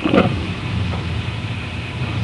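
Low, steady rumbling from a webcam microphone as the camera is handled and moved, with a short knock-like sound just after the start.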